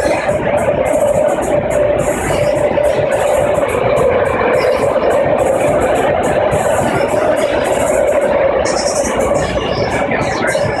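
BART train car in motion, heard from inside: a loud, steady running rumble with a persistent tone held throughout.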